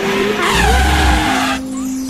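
Cartoon sound effect: a loud screech that falls in pitch over about a second, with a low rumble beneath, over light background music.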